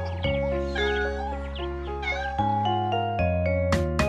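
Instrumental children's song music with a cat meowing several times over it.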